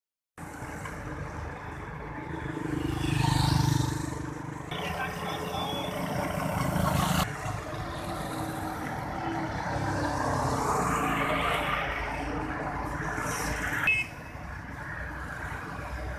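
Roadside traffic noise: vehicles passing on the highway, swelling and fading about three seconds in and again around ten to twelve seconds in. The background changes abruptly a few times, and there is a brief sharp sound just before fourteen seconds.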